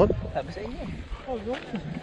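Indistinct voices of people talking in the background, quieter than close speech, over a low rumble.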